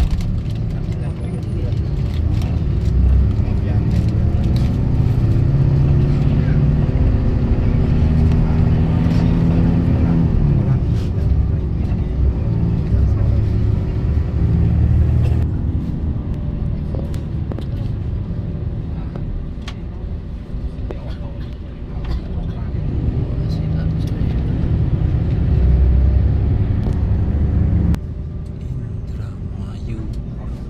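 A vehicle engine heard from inside the cabin, pulling away and accelerating. Its pitch climbs for several seconds, drops sharply about ten seconds in at a gear change, then climbs again later. The sound changes abruptly near the end.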